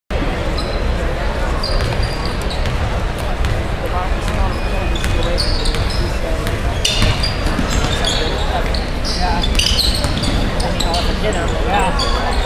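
Basketball being dribbled on a hardwood gym floor during a game, with crowd chatter throughout.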